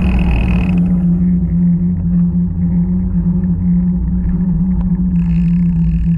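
A music chord fades out about a second in. A steady low rumble with a constant low-pitched hum follows.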